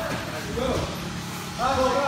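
Raised voice calling out briefly about half a second in, and again more loudly near the end.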